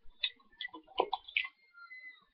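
A few sharp clicks and light taps from small plastic makeup cases being handled: four distinct clicks in about a second and a half, then quieter.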